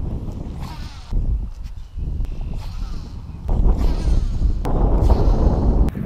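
Wind buffeting the camera's microphone on an open, windy pond bank: a loud low rumble that comes in gusts, briefly about a second in and strongest from about three and a half seconds to near the end. Faint, higher-pitched calls sound under it in the quieter moments.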